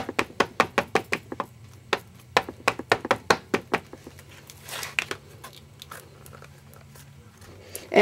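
Small ink pad dabbed quickly against a rubber stamp to ink it, a run of quick taps about five a second that stops a little under four seconds in. A brief rustle follows about a second later.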